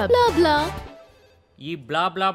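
Film dialogue over a background music score; the music stops abruptly about a second in, and after a short pause the talking resumes.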